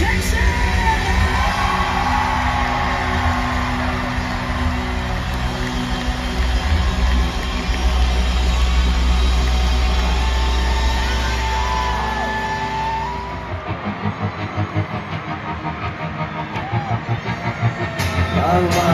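Live rock band playing in an arena, with a lead singer over electric guitars, bass and drums, loud and boomy as picked up by a phone in the crowd. About thirteen seconds in the heavy low end drops away and the music goes on lighter, with a pulsing beat.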